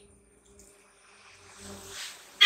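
A faint steady buzzing hum under quiet background hiss.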